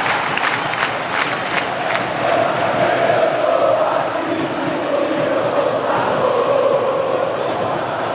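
Large football crowd in a stadium singing a chant in unison, with about three sharp beats a second in the first few seconds.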